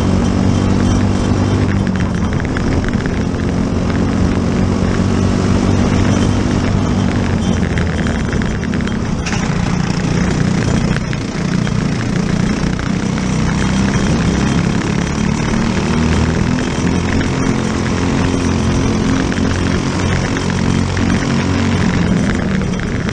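Briggs & Stratton LO206 single-cylinder four-stroke racing kart engine at full race pace, its note falling and climbing again several times as the kart brakes for corners and accelerates out.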